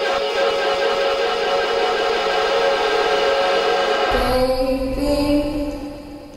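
Synthesizer music from an original Teenage Engineering OP-1: a sustained chord of many steady tones holds for about four seconds. Then a lower chord with bass comes in and fades away near the end.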